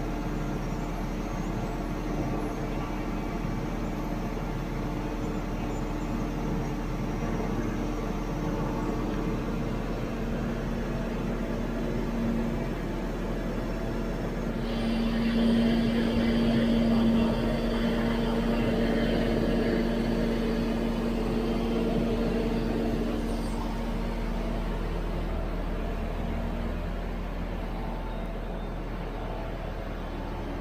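Liebherr LTM 1230-5.1 mobile crane running steadily with its engine and hydraulics driving the ballast cylinders during automatic counterweight handling. About halfway through the drone grows louder, with a higher hiss added for several seconds, then eases off.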